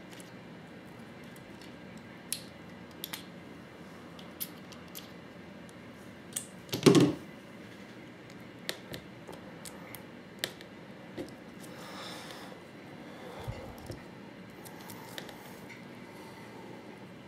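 Small clicks and taps of Allen keys and small marker parts being handled on a workbench while a paintball marker's breech eyes are taken apart, with one louder knock about seven seconds in.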